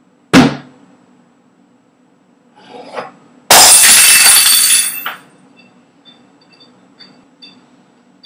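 A sharp bang, then about three and a half seconds in a loud crash lasting about a second and a half, followed by scattered small ringing clinks. It is heard in a kitchen where a cabinet door swings open.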